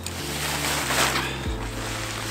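Nylon stuff bag and paraglider lines rustling as they are handled and pushed into the bag, over background music with a low bass line that changes note a few times.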